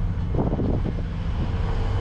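Pickup truck engine running at low speed as the truck creeps along, heard from inside the cab as a steady low drone.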